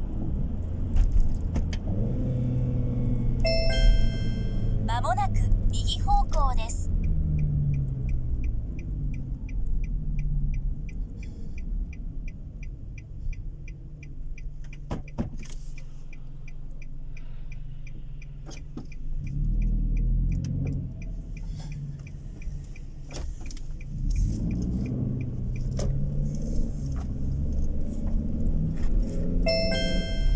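Car interior road and engine noise. A few seconds in, a car navigation chime and a synthesized voice prompt sound. Then the turn-signal indicator ticks steadily for about ten seconds while the car slows and waits at a junction, and another navigation chime comes near the end.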